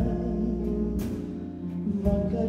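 Live chamber ensemble music in a slow ballad: strings holding sustained chords, with a struck accent at the start and another about a second in.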